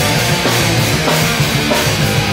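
Hardcore punk band playing live: distorted electric guitar, bass and drum kit, loud and dense.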